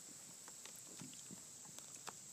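Near silence: faint background hiss with a few soft ticks.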